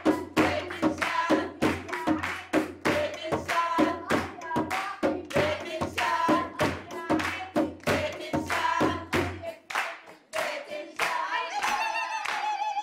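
Women singing a folk song together over steady rhythmic hand clapping and a frame drum beat, about three beats a second. The music thins briefly about ten seconds in, then picks up again.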